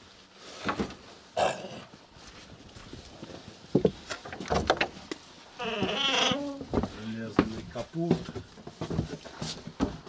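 An animal's quavering cry, about a second long, near the middle, the loudest thing amid scattered knocks and voices.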